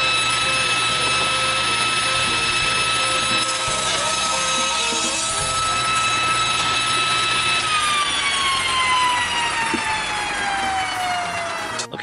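Table saw running with a steady whine while a four-by-four is crosscut through the blade. About seven and a half seconds in, the motor is switched off and the whine falls steadily in pitch as the blade spins down, then cuts off suddenly near the end.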